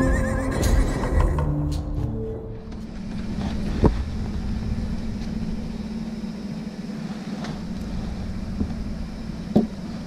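Intro music with a horse whinny sound effect near the start, fading out about two and a half seconds in. A steady low hum follows, with a couple of single knocks.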